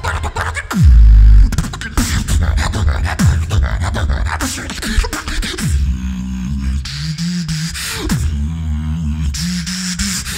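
Solo beatboxing into a microphone through stage speakers: dense, rapid mouth-percussion hits with repeated falling bass sweeps and a very loud, deep bass blast about a second in. From about six seconds a hummed melody stepping between a few notes runs over the beat.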